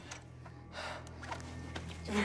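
A man's short, strained gasps and breaths as he cries out in pain, heard over a low steady hum.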